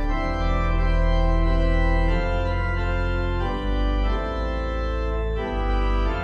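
Slow organ music: sustained chords, each held for a second or two before changing.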